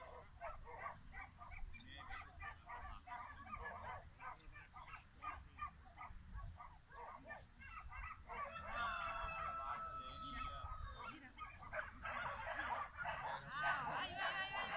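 Dog barking and yelping repeatedly in short, irregular calls, then a long steady whine held for about two seconds, with more yelps near the end. Wind rumbles on the microphone throughout.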